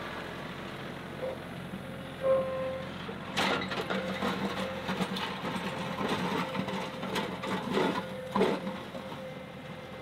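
John Deere 2038R compact tractor's diesel engine running steadily as it drags a box blade through dirt and gravel, with irregular scraping and clunking from the blade from about three seconds in until near the end.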